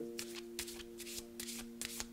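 A deck of oracle cards being shuffled by hand: a string of quick, light card flicks. Underneath is a steady held chord of background music.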